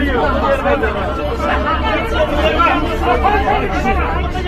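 Several people's voices talking over one another at close range in a crowded bus carriage, with a low steady hum underneath.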